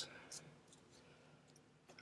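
Near silence, with a few faint, scattered clicks from trading cards being handled.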